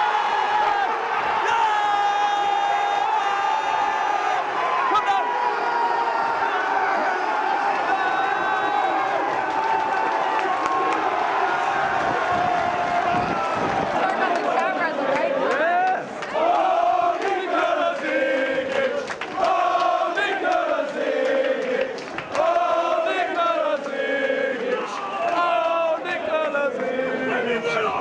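A football crowd roaring in celebration, likely at a goal, as one long sustained shout for the first half. From about halfway the roar turns into fans chanting together in rhythm.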